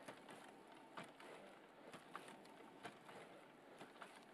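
Faint hush of the room with soft, irregular taps and clicks, roughly every half second to a second, from a Wandercraft robotic exoskeleton's footplates and joints as it steps across carpet.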